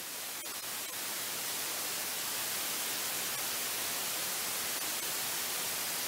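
Steady hiss of static, strongest in the high range, growing slightly louder over the first second, with a couple of faint clicks about half a second in.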